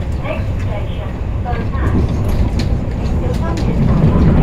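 Metro Cammell electric multiple-unit train running at speed, heard inside the carriage: a steady low rumble from the wheels and running gear, with a few light clicks. Passengers are talking over it.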